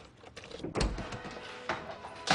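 A house door being unlatched and opened: a few light clicks and a dull thud a little under a second in.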